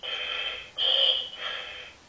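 Electronic radio-static sound effect from a talking Buzz Lightyear action figure's small speaker as its microphone function is switched on: a hiss with a high whistle in three stretches, the middle one loudest, fading near the end.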